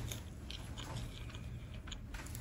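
A person chewing French fries close to the microphone: quiet chewing with several small, soft crunches.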